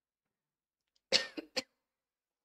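A person coughing: a quick cluster of about three coughs a second in, the first the loudest.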